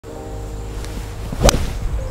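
Golf iron swung through and striking the ball off the turf: a quick swish ending in one sharp impact about a second and a half in.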